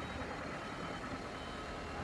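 Forklift engine running steadily at a low level, a constant drone with a faint steady whine and no sudden sounds.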